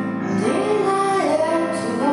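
A woman singing to her own digital piano accompaniment. Sustained keyboard chords carry through, and her voice enters about half a second in, gliding between long held notes.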